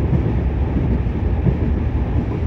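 12624 Chennai Mail passenger train running at speed, heard from an open coach doorway: a steady low rumble of wheels on the rails with no distinct rail-joint clicks.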